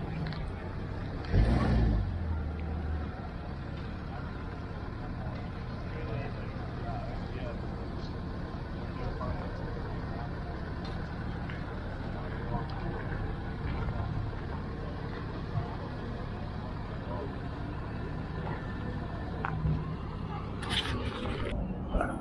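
Pickup truck engine running as it slowly tows a boat trailer, under steady outdoor noise, with a loud thump about a second and a half in.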